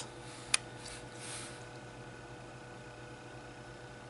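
Quiet room tone with a steady low electrical hum, broken by one sharp click about half a second in and a faint soft rustle a moment later.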